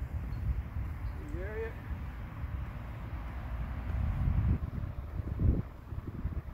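Low, uneven rumble of wind buffeting the microphone, with a brief louder gust about five and a half seconds in.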